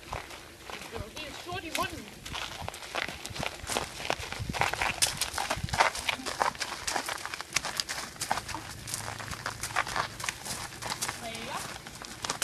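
Horse's hooves stepping: irregular knocks and clops, with a person's voice at times.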